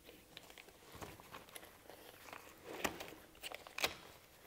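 Faint rustling of a softbox's fabric as hands press it down onto the Velcro along an LED panel's frame, with scattered small ticks and two sharper clicks near the end.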